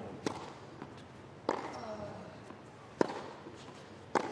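Tennis ball struck by rackets in a rally: a serve just after the start, then two more sharp hits roughly every second and a half, the last the loudest.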